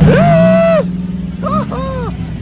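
A man's loud, drawn-out word and then laughter over the steady low hum of a motor vehicle engine running close by in traffic.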